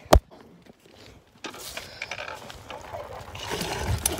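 A sharp knock as the camera is handled and mounted, then from about a second and a half in a mountain bike rolling down a leaf-covered dirt trail: tyres crunching through dry leaves with rattling and clicks, growing louder as it picks up speed.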